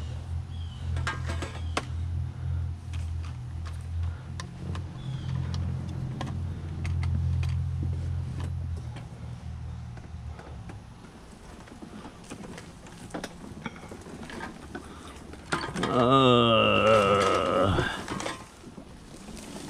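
Mobility scooter's electric drive motor humming steadily as it moves, with scattered clicks and rattles. The hum fades after about nine seconds, and near the end a much louder wavering whine starts up.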